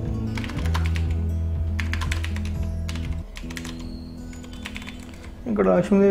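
Computer keyboard typing: a quick run of key clicks as text is entered, over background music with sustained low notes. A voice starts near the end.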